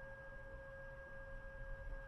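Faint steady whine of two pure tones, one low and one higher, held unchanged, over a low background rumble.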